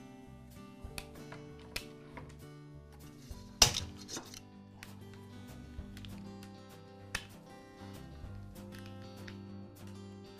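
Background music with a few sharp clicks of cutters snipping plastic cable ties on a corrugated wire loom; the loudest snip comes about three and a half seconds in.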